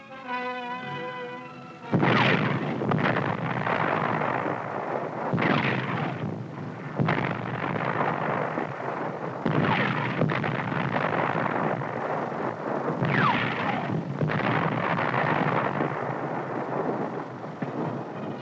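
Orchestral music, then from about two seconds in, tank guns firing and shells exploding on a gunnery range: heavy booms every few seconds over continuous rumble, with music underneath.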